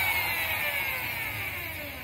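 Handheld electric drill running as it bores a pilot hole in timber, its motor whine falling steadily in pitch and growing quieter as the drill slows down.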